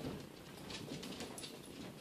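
Faint, irregular footsteps of a person walking and a small dog trotting across the floor.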